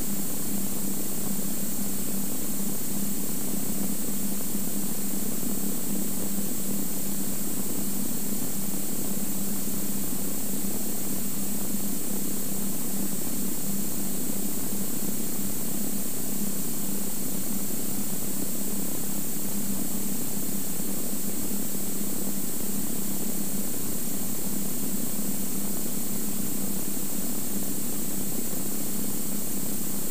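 Cirrus SR22's six-cylinder Continental piston engine and propeller droning steadily inside the cabin, holding a constant power setting on final approach, with a steady hiss over it.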